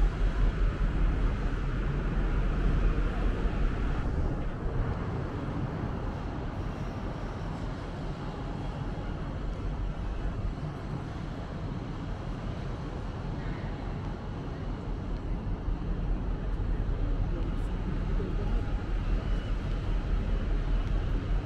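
Outdoor city ambience: a steady low rumble, with faint voices of people passing.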